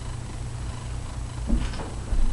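A steady low hum, with a faint brief rustle or knock about a second and a half in.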